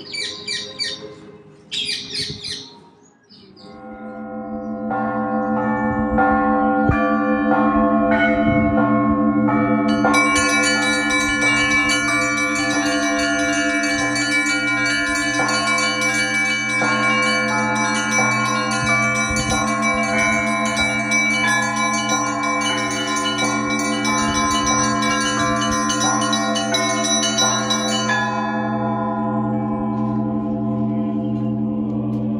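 Birds chirping for the first few seconds. Then, about four seconds in, Russian Orthodox convent bells begin to ring and build into a full festal peal: many small high bells strike rapidly over the long steady hum of the large bells. The small bells drop away near the end, leaving the deep bells ringing.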